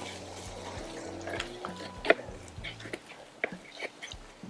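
Chef's knife slicing an onion on a wooden cutting board: several short, irregular chops against the board, over a faint steady sizzle of chicken breasts on the griddle.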